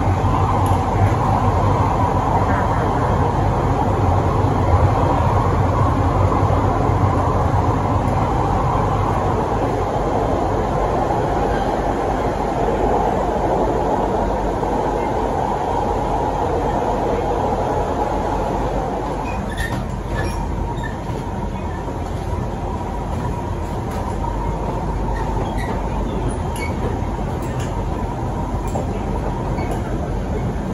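SMRT Siemens C651 metro train running at speed, heard from inside the passenger car: a steady rumble of wheels on rail and the train's running gear. It eases a little in level about two-thirds of the way through.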